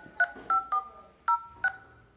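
Smartphone dial-pad key tones (DTMF) as digits of a phone number are tapped in: about five short two-tone beeps at uneven intervals, some trailing on briefly.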